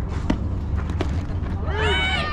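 Sharp crack of a bat hitting a fastpitch softball, with a smaller knock about a second later. Near the end, high-pitched excited shouting and cheering breaks out, over a steady low wind rumble on the microphone.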